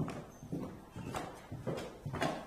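Footsteps of people walking in, with sharp steps about twice a second.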